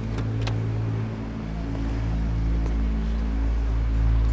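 A taxi's engine idling steadily, with two light clicks just after the start.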